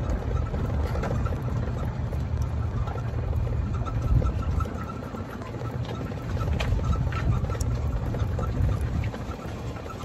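Golf cart running as it is driven along, a steady low rumble that dips a little about five seconds in and again near the end.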